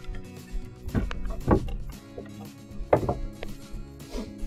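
Background music with a few short wooden knocks, pine boards being handled and set down on the wooden table, in a cluster about a second in and again near three seconds.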